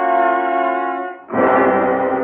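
Dramatic orchestral brass music: a held chord dies away just past a second in, and a new loud chord begins at once.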